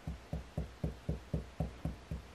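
Fingertips tapping on a cloth-covered table in a steady rhythm of low, dull taps, about four a second.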